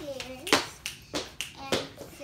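A child's short vocal sound, then several sharp clicks or snaps at uneven intervals.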